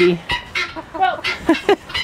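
Chickens clucking: a string of short, separate calls.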